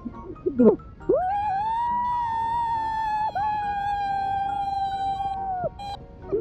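A person's long, high held howl of about four and a half seconds, sweeping up at the start, sagging slightly, and broken for a moment halfway through.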